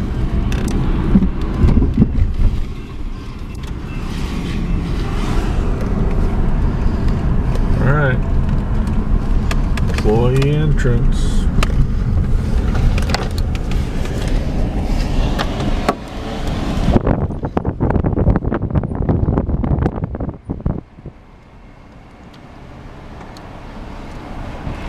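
Car cabin noise while driving: steady low engine, road and wind rumble. Near the end the noise falls off sharply as the car slows to a stop, then slowly builds again.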